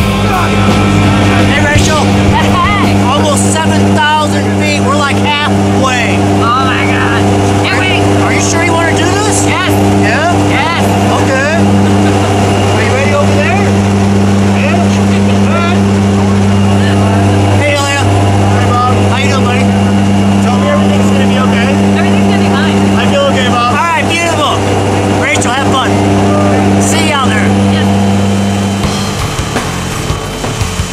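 Steady, loud drone of a skydiving jump plane's engines heard inside the cabin, with people's voices shouting over it. The drone stops about a second before the end.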